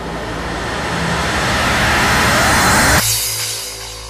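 Psytrance build-up: a swelling synthesized noise riser with a rising pitch sweep grows louder, then cuts off suddenly about three seconds in, leaving quieter held synth tones and a low bass note.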